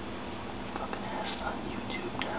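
A person whispering softly, with hissy 's' sounds, over a steady low hum.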